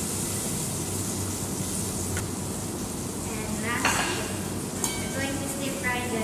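Tomatoes sizzling as they fry in a stainless saucepan, with a wooden spatula stirring and scraping them out. A few sharp clinks cut through, the loudest about four seconds in.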